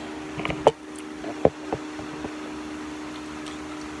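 Short taps and knocks from a hamster bumping against a phone set down in its cage. There is a small cluster about half a second in and a few single knocks after, all over a steady low hum.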